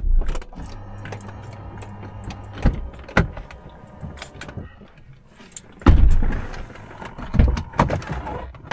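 Inside the cabin of a 2004 Range Rover crawling over a rough dirt trail: a low engine hum under frequent knocks, rattles and jangles. Heavy thumps sound as the vehicle jolts over ruts, the loudest about six seconds in and again near the end.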